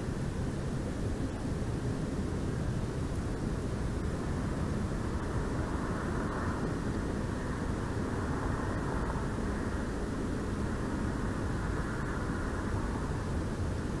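Steady low rumbling outdoor noise with no calls or distinct events, swelling slightly about six seconds in.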